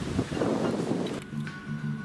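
Gusty wind noise on the microphone outdoors, then about a second in it cuts abruptly to quiet background music in a pub.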